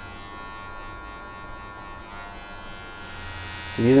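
Cordless electric hair clipper running with a steady, even buzz.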